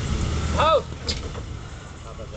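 A motor running with a steady low hum that cuts off suddenly under a second in, with a short vocal call just as it stops.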